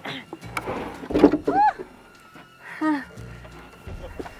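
People crying out with effort as they heave a heavy timber wall frame upright: two short straining cries, about a second in and again near three seconds, each rising and falling in pitch, with breathy noise between.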